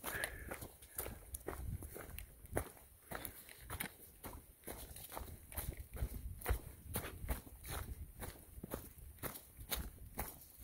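A hiker's footsteps on a dry, leaf-covered dirt trail, a steady walking pace of about two steps a second, over a low rumble of wind on the microphone.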